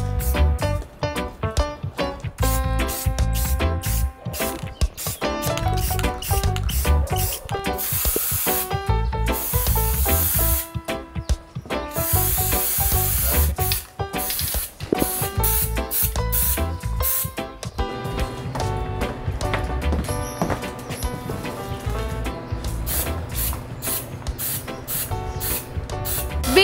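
Background music with a steady beat, over which an aerosol spray-paint can hisses in two long bursts, about eight and twelve seconds in.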